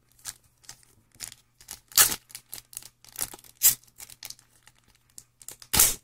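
A foil trading-card pack wrapper crinkling and tearing in irregular sharp bursts as it is pulled open by hand, resisting being opened. The loudest rips come about two seconds in and just before the end.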